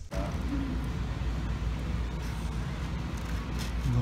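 Steady low rumble with an even hiss of background noise, with a faint brief murmur of a voice about half a second in.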